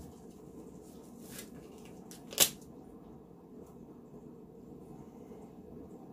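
Quiet handling sounds of a glass wine bottle and snowflake stickers being placed on it, with one sharp click about two and a half seconds in and a fainter one about a second earlier.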